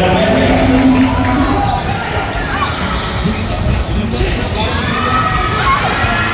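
Basketball being dribbled on a hardwood court in a large echoing gym, with short sharp bounces over the steady noise of the crowd.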